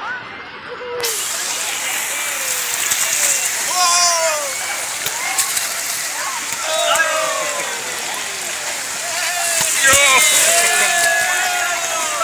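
Wave-pool water sloshing and splashing, with a crowd of swimmers calling out and shrieking over it. The water noise comes in abruptly about a second in.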